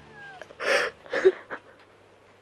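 A woman crying: a short falling whimper, then three loud sobs in quick succession about a second in.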